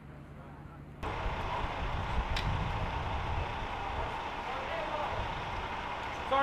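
Indistinct background voices and general ambient noise. The noise steps up suddenly and becomes much louder about a second in, with a single click partway through.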